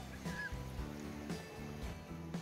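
Background music of held low notes that shift every half second or so, with a short high squeal near the start.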